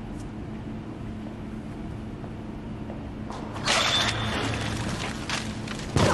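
Advert soundtrack sound effects: a low steady rumble with a hum, then a sudden loud rush of noise about three and a half seconds in that slowly dies away, and another sharp hit right at the end.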